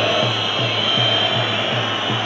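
Steady roar of a stadium crowd on a football match broadcast, with a low, regular beat of background music underneath.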